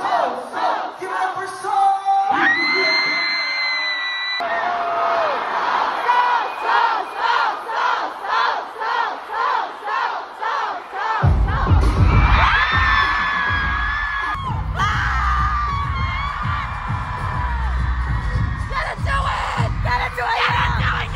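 Concert crowd cheering and chanting in a steady rhythm, about two to three shouts a second, with long held screams. About eleven seconds in, loud music with a heavy bass beat comes in under the crowd noise.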